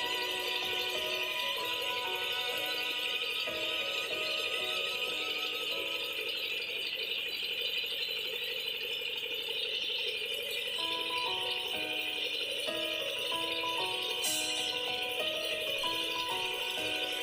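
Background music: a melody of held notes stepping from one to the next, over a steady high rattling shimmer.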